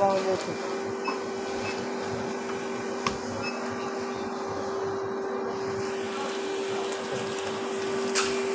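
Steady hum of a supermarket freezer case's refrigeration unit: one constant tone over a fan-like hiss, with a single sharp click about three seconds in.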